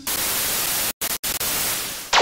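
TV static sound effect: a steady hiss of white noise, cut by two brief dropouts about a second in.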